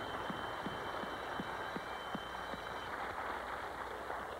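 Studio audience applauding steadily, a dense even clatter of hand claps with a few brief vocal whoops mixed in.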